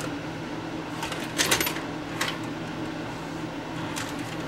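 Sony SLV-N71 VHS VCR taking in a cassette: a quick cluster of clicks and clatter from the loading mechanism about a second and a half in, then one more click a little after two seconds, over a steady low hum.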